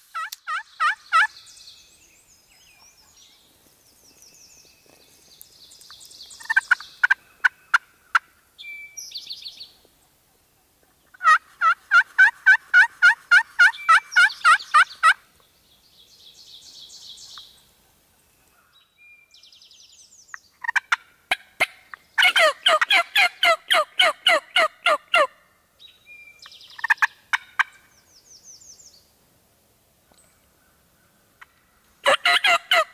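Wild turkey calling in runs of evenly spaced yelps, about three notes a second. The longest run lasts about four seconds in the middle, and the loudest, densest run comes a few seconds before the end. Fainter, higher bird chirping comes between the runs.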